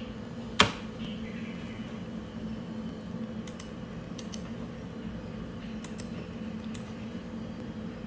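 Scattered clicks from a computer mouse and keyboard over a steady low hum. One sharp click about half a second in is the loudest, followed by a few fainter ones spread through the rest.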